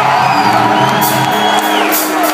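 Metal band playing live through a concert PA: sustained electric guitar notes with drums and crashing cymbals, and crowd shouts over it.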